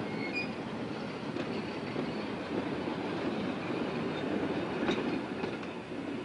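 Electric rope shunting winch hauling freight wagons on a siding: a steady rumble of the rope drum and rolling wagons, with faint high squeal early on and a couple of light clicks about five seconds in.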